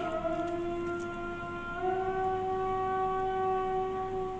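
A muezzin chanting the azan, the Islamic call to prayer: one long held note that steps up in pitch about two seconds in and carries on.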